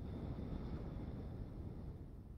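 A long exhale: a soft, steady rush of breath that lasts about two seconds and then fades.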